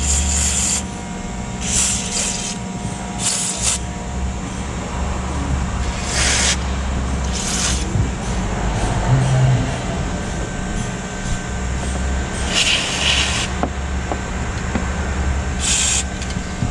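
Aerosol can of white lithium grease hissing through its straw in about seven short bursts, lubricating the upper control arm joint of a Ford Fusion's front suspension against creaking. A steady low hum runs underneath.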